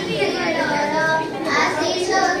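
Children's voices in a large hall: one clear young voice carrying over the murmur of a seated crowd of schoolchildren.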